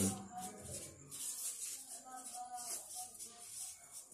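A felt-tip marker writing on paper, heard as faint scratchy strokes.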